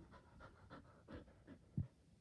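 Border Collie panting in quick, faint breathy pants, with one low thump near the end.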